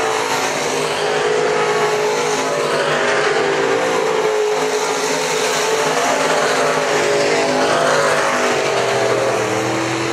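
A pack of dirt-track sport modified race cars racing, several engine notes overlapping and rising and falling in pitch as the cars go into and out of the turns.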